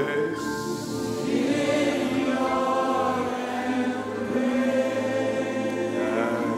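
Worship music: voices singing long held notes in chorus over the band's accompaniment.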